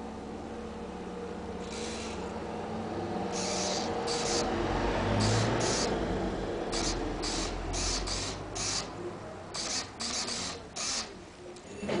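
Servo-driven air valve for an organ opening and closing its shutter over the air hole: faint low steady tones with a rising rush of air, then a run of short hissy bursts, several a second, as the servo works the shutter.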